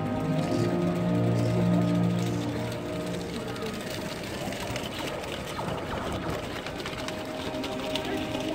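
Music with long held notes over a low drone and a voice mixed in, loudest in the first few seconds and softer in the middle.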